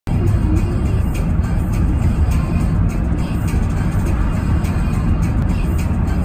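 Steady low rumble of a car's road and engine noise, heard from inside the cabin while driving through a road tunnel, with music playing over it.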